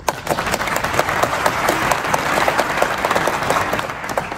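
Audience applauding, with many overlapping claps, starting all at once and thinning out near the end.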